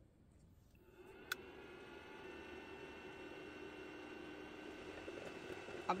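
A faint click about a second in, then a steady electrical hum with a thin high whine. This is the EBL 300 portable power station's AC inverter and cooling fan running under the load of a drip coffee maker.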